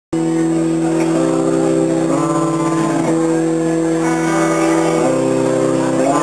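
Live rock band playing, led by electric guitars holding sustained chords that change about once a second.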